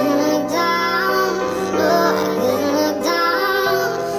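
Nightcore edit of a pop ballad: a sped-up, pitched-up female vocal that sounds almost child-like sings "But I couldn't look down, no I couldn't look down" in long, gliding notes over a held instrumental backing.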